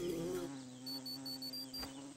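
Cartoon sound effect of a wasp buzzing: a steady low hum, with a short run of high beeps about a second in.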